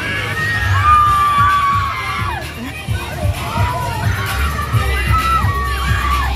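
Riders on a swinging, spinning pendulum thrill ride screaming and shouting, several long held cries gliding up and down over one another, with a steady low rumble underneath that grows stronger about halfway through.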